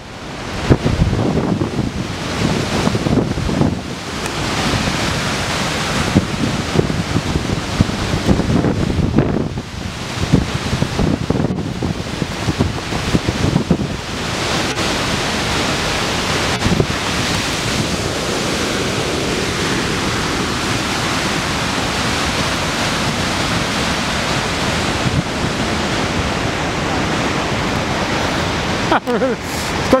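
Skógafoss waterfall's steady rush of falling water, with wind buffeting the microphone in gusts through the first half, after which the rush goes on more evenly.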